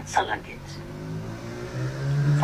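A man's voice: a couple of short syllables, then a long, drawn-out hesitation sound, "uhh", held with a slowly wavering pitch that rises near the end, as he searches for his next words.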